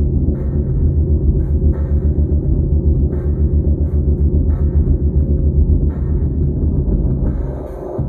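Loud, bass-heavy music: a deep rumbling low drone pulsing rapidly, with a brighter burst about every second and a half.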